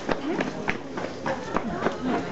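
Footsteps on a hard path, about three a second, over voices of people talking around.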